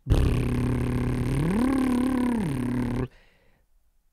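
A man's long voiced lip trill, a lip warm-up, lasting about three seconds: a buzzing lip flutter on a low held pitch that slides up about an octave in the middle and back down, then stops suddenly.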